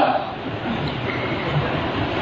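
Steady rushing background noise with no distinct events, fairly loud.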